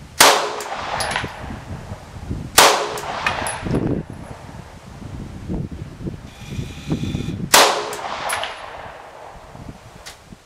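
Three rifle shots, about two and a half and then five seconds apart, each with a short echo trailing after it.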